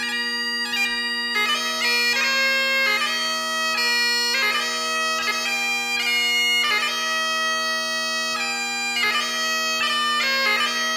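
Great Highland bagpipe playing a tune: the steady hum of the drones holds underneath while the chanter carries the melody, its notes broken by quick grace notes.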